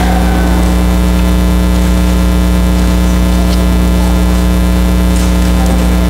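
Loud, steady electrical mains hum, a buzz with a long row of evenly spaced overtones, carried on the sound system's feed without change.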